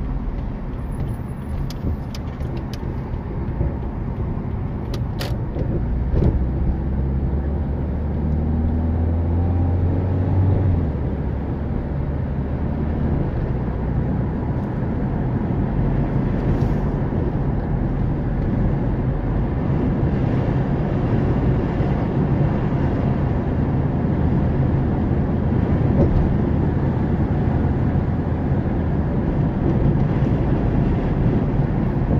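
A car driving, its engine and tyre noise heard from inside the cabin as a steady low rumble. A few sharp clicks come near the start, and the engine rises in pitch as the car accelerates between about six and eleven seconds in.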